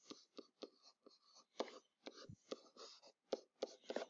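Faint stylus writing: an irregular run of small taps and short scratchy strokes as the pen tip meets the writing surface.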